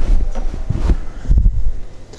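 A few dull, low thumps and knocks of food being handled on a wooden chopping board, the heaviest about a second and a half in.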